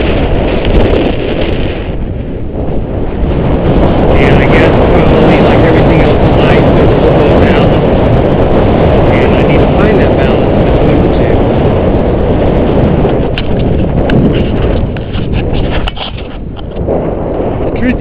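Loud wind buffeting on the microphone of a camera carried on a moving bicycle, a dense steady rumble that eases briefly twice.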